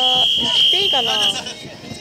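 A whistle blown in one long, steady, shrill blast of about a second and a half, with voices calling over it.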